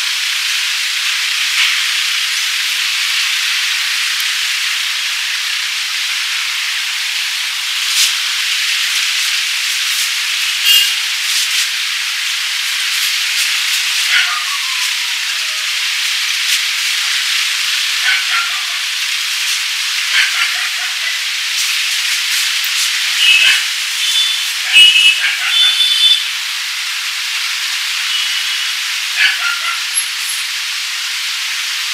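Fingers rubbing and scratching through hair and over the scalp in a close-miked head massage, heard as a steady high hiss. Scattered clicks and a few short high squeaks come about three-quarters of the way through.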